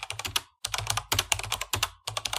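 Computer-keyboard typing sound effect: a fast run of keystroke clicks, about ten a second, with a short break about half a second in. It goes with on-screen text being typed out letter by letter.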